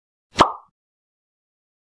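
A single short pop sound effect, about half a second in, dying away quickly.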